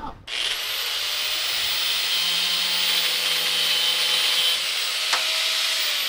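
Handheld power grinder spinning up and cutting through steel wire-rope cable: a steady high motor whine with a grinding hiss. There is a short sharp crack about five seconds in, and the motor starts to wind down at the very end.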